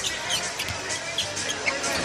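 Arena basketball game sound: a steady crowd murmur, with a ball bouncing on the hardwood court and scattered short squeaks and clicks.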